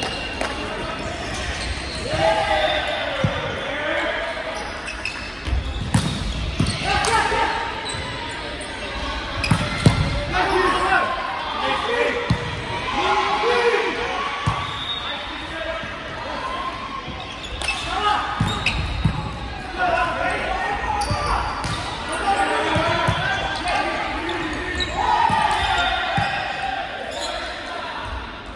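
Volleyball rally in a large hall: the ball is struck again and again, each hit a sharp smack that echoes, while players shout calls to one another.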